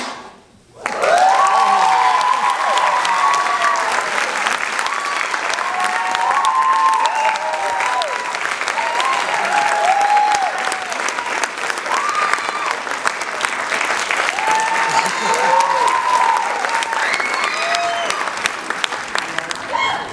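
The music cuts off, and about a second later an audience starts applauding and cheering, with many high whoops and shouts over steady clapping that keeps going throughout.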